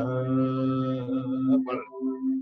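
A man singing one long held note of an Indian sargam (solfège) exercise, breaking off about a second and a half in, with a steady held tone under it.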